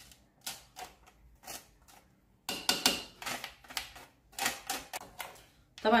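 Plastic spoon scraping grated garlic off a stainless-steel flat grater: a run of short, irregular scrapes and clicks on the metal that come faster in the second half.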